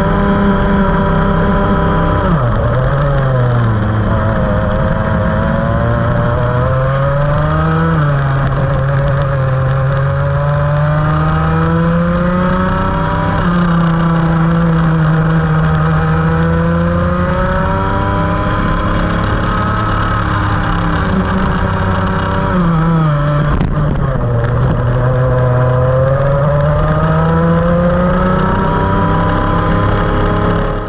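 Rotax Max 125 two-stroke kart engine at racing speed, heard loud and close: the revs climb steadily along the straights and fall sharply into corners about four times. The driver describes this run as full of bogging.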